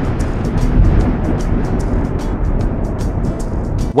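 A drum roll sound effect: a loud, dense rumbling roll that holds steady and cuts off suddenly at the end.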